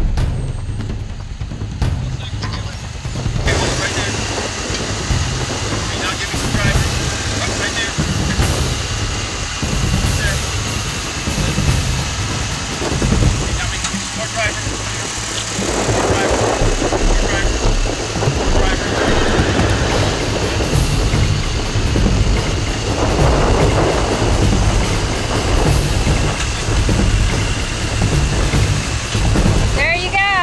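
Jeep Wrangler Unlimited Rubicon's 4.0-litre inline-six engine running at low revs as the Jeep crawls over slickrock through a rock crevice.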